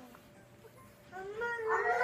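Toddler's voice: after about a second of quiet, a drawn-out, high-pitched vocal sound starts and grows louder.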